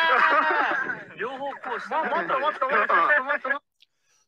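A group of people's voices, talking and calling out, overlapping and excited. The voices stop about three and a half seconds in.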